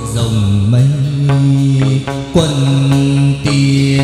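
Hát văn singing: a man holds long, low chant-like notes with slow slides in pitch, over plucked đàn nguyệt (moon lute) strings.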